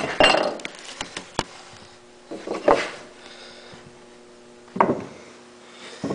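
Steel reed valve plate of a two-cylinder air compressor being handled and moved on a wooden workbench: a few sharp metallic clicks and light knocks in the first second and a half, then softer scraping handling sounds, with a faint steady hum underneath in the second half.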